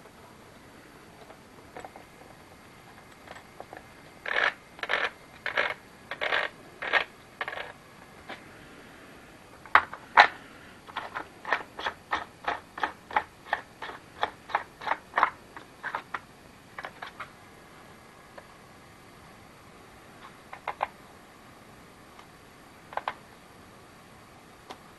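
Short clicks and rattles of a Lynxx 40 V chainsaw being put together by hand: its Oregon saw chain handled on the guide bar and the plastic side cover fitted. A handful of separate clicks come a few seconds in, then a quicker, even run of about three clicks a second as the yellow cover knob is turned, and a few stray clicks near the end.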